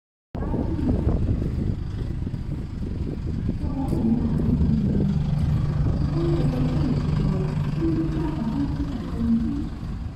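Low, continuous rumble of a motor vehicle nearby, with a steady low engine note through the middle few seconds.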